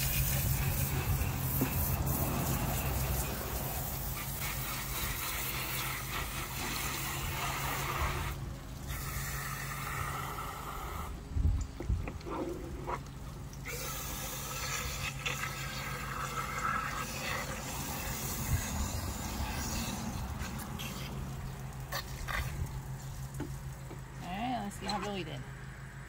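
Water spraying from a garden-hose spray nozzle, rinsing out a plucked chicken carcass. The spray cuts out briefly about a third of the way in and again around the middle.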